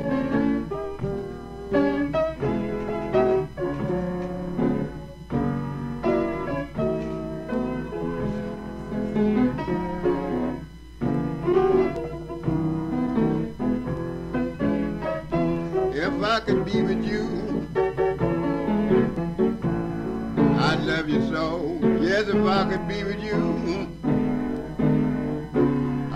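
Solo blues piano starting a new piece suddenly and playing its opening, with a voice joining in places from about sixteen seconds in.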